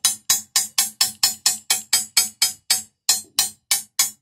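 Light, rhythmic tapping on a scored sheet of glass with a Toyo TC90 glass cutter, about four sharp glassy taps a second, each with a short ring, with one brief pause near the end. The tapping runs the score line before the glass is snapped, which he takes to be relieving the tension in the glass.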